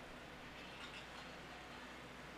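Faint, steady background ambience with a low hum, and no distinct sound events.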